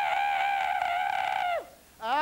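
A long, high-pitched drawn-out 'oooh' cry from a person's voice, held steady for about a second and a half, its pitch dropping as it trails off.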